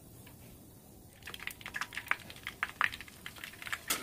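Bread slices deep-frying in hot oil, crackling and spitting in quick, irregular pops that start about a second in after a quiet opening.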